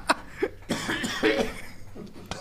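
A man coughing a few short times after a hit from a strong nicotine vape.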